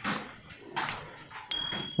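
Rustling and scuffing of someone moving about, then a short high ringing tone that starts sharply about a second and a half in.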